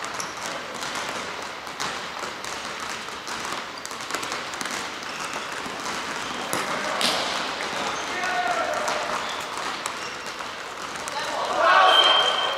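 A futsal ball being kicked and bouncing on a wooden gym floor, with the sharp knocks echoing in a large hall. Players' calls and shouts come through the game, loudest near the end.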